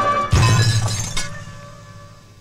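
Film-song music, then glass shattering about a third of a second in. The noise of the break fades over about a second, leaving a low held tone.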